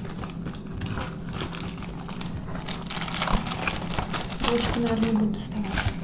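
Paper burger wrappers and cardboard fast-food packaging crinkling and rustling in quick, irregular crackles as burgers are unwrapped.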